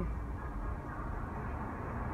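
Steady low rumble of a car's engine idling, heard inside the cabin.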